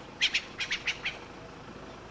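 A bird calling a quick series of about six short, sharp chirps in the first second, then stopping.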